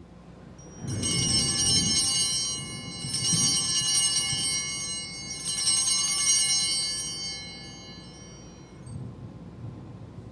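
Altar bells (sanctus bells) rung three times at the elevation of the chalice during the consecration. Each peal is a bright, shimmering ring that fades over a couple of seconds, about two seconds apart.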